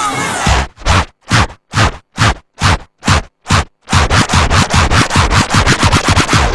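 Breakbeat dance music in a build-up. The full mix cuts out, leaving single sharp, noisy hits about two a second with silence between them. From about four seconds in, a faster roll of hits follows and speeds up.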